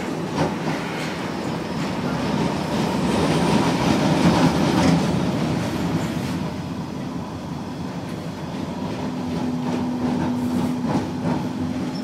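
Riding inside a moving tram: steady rolling noise with wheels clicking over the rails, loudest about four seconds in, and a steady motor hum from about nine to eleven seconds.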